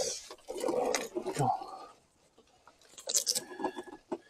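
Handling noise from a hoverboard's Velcro strap and plastic housing: irregular rustling and rubbing with a click, then, after a brief lull, a short run of sharp crackles about three seconds in.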